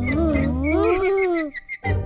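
A cartoon character's wordless vocal sound: one long call that wavers and slides up and down in pitch, over background music with a steady low bass. It breaks off about a second and a half in, with a brief second sound near the end.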